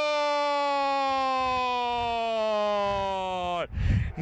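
A Spanish-language football commentator's long drawn-out goal cry, one held "gooool" that slowly falls in pitch and breaks off shortly before the end.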